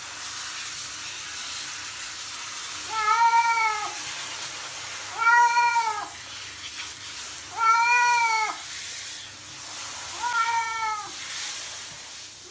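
A cat being bathed with a shower head meows four times, each a long call that rises and then falls in pitch, about every two and a half seconds, over a steady faint hiss.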